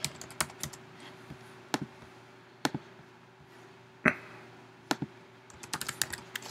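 Typing on a computer keyboard: a quick run of keystrokes at the start and another near the end, with a few single key taps about a second apart in between.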